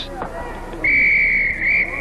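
Referee's whistle blown once, a single steady high tone lasting about a second and starting about a second in.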